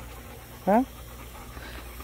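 A dog panting steadily, with one short questioning "huh?" spoken partway through.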